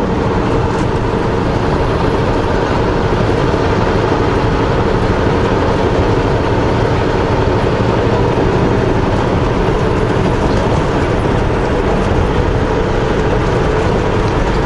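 Steady drone of a semi truck's diesel engine and road noise heard from inside the cab while driving at an even pace, with a faint constant hum running through it.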